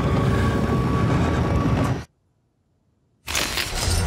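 Loud, dense film-trailer sound design, a noisy wash heaviest in the low end, that cuts off suddenly about two seconds in. About a second of silence follows before it comes back.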